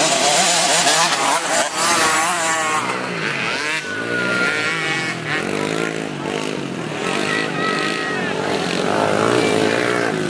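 Small youth dirt bikes revving, several engines overlapping, their high-pitched tone repeatedly rising and falling as the riders work the throttle along a woods trail.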